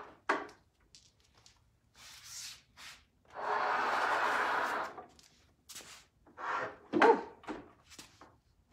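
A wooden piece of furniture being turned around on its work surface: a knock just after the start, then a scraping slide lasting about a second and a half midway.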